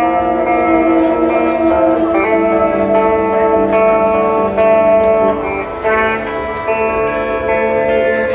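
Live rock band playing an instrumental stretch of a song without vocals: electric guitars ring out sustained chords that change every second or two.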